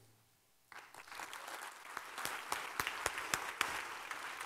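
Audience applauding, starting suddenly under a second in and building to steady clapping with many sharp individual claps.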